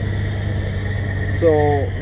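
A steady low drone of a Mack truck's diesel engine idling, heard inside the sleeper cab, with no change in pitch. A man's voice comes in about a second and a half in.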